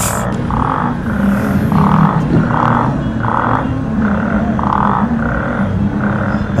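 Low, droning background music with a soft pulse repeating about every two-thirds of a second under a tense pause.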